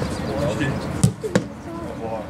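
Two sharp thuds about a third of a second apart: a football struck hard, then a goalkeeper diving and catching it on grass, over spectators' chatter.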